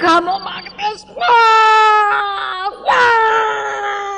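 A woman wailing and crying: a short sob, then two long drawn-out wails, each sliding slowly down in pitch.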